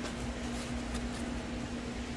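A steady low hum with faint light handling ticks as a small display panel is lifted out of its foam packing.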